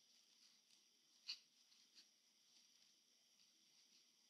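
Near silence: faint room tone, with one soft click about a second in.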